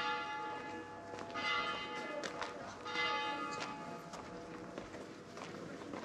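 Church bell struck three times, about a second and a half apart, each stroke ringing on and fading.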